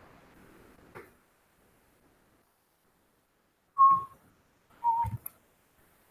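A mostly quiet room with two short, steady-pitched notes about a second apart in the middle, the second a little lower: a person humming.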